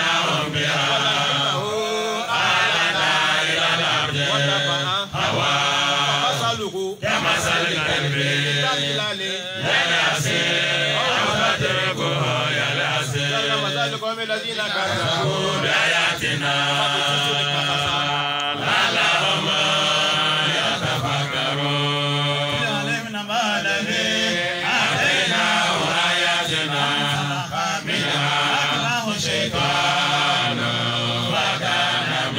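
Men chanting an Islamic devotional chant into microphones, amplified through a PA. The voices run on continuously over a steady low hum.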